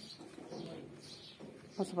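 Faint bird calls: repeated short falling chirps, with the low cooing of a pigeon or dove.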